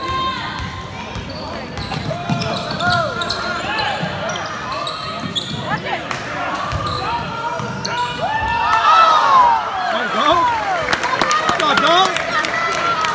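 Basketball game sounds in a gym: the ball dribbled on the hardwood floor and sneakers squeaking as players run the court, with voices from the players and the crowd. There are more bounces and squeaks near the end.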